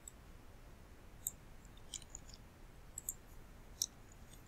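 Faint computer mouse clicks, about six short clicks scattered unevenly, over low background hiss.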